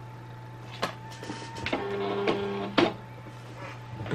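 Silhouette Cameo cutting plotter loading a cutting mat: a few clicks, then its feed motor whirs steadily for about a second near the middle as the rollers draw the mat in, ending with a click.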